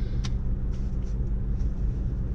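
Car engine idling, a steady low rumble heard inside the cabin, with one faint click just after the start.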